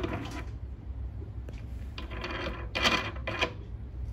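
3D-printed plastic drip head being slid onto the metal Z-axis arm of an Elegoo Saturn resin printer, rattling and scraping. There is a short burst at the start, then a longer cluster from about two seconds in, loudest near three seconds.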